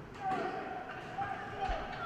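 Ice hockey rink sound in a hall: a few sharp knocks of sticks and puck on the ice and boards, with distant voices calling across the arena.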